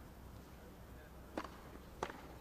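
Quiet low hum, then a single sharp crack of a tennis ball struck by a racket about one and a half seconds in.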